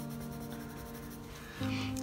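Soft background music of sustained held chords, changing near the end, over the faint scratching of a coloured pencil shading short strokes on sketchbook paper.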